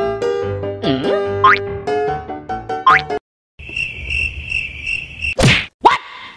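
Light background music with cartoon-style sound effects: a whistle-like glide that dips and rises about a second in and another rising one about three seconds in, then, after a short break, a steady pulsing high buzz, and two sharp sweeping hits near the end.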